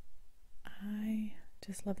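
A woman's soft-spoken, close-miked voice talking, beginning about two-thirds of a second in, after a short pause.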